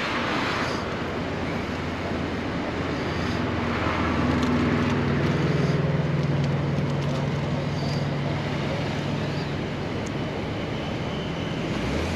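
Road traffic passing, with one vehicle's engine hum swelling in the middle and then fading.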